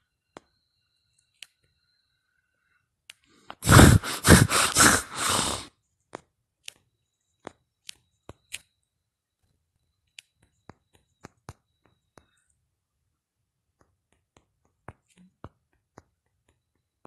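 Sparse, irregular clicks of a phone's on-screen keyboard being tapped while text is typed. A loud burst of noise lasting about two seconds comes about four seconds in.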